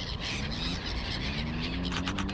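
Birds calling at a lake, ducks and gulls among them, over a steady high hiss.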